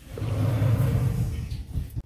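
A fleece blanket rubbing and brushing against the microphone, giving a loud, low, rumbling rustle that swells in and fades away over almost two seconds.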